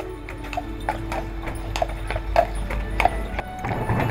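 A horse's hooves clip-clopping at a walk, about three steps a second, over music holding low sustained tones.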